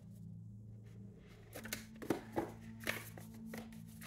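Light clicks and rustles of a tarot card deck being handled: a few short taps in the second half, over a steady low hum.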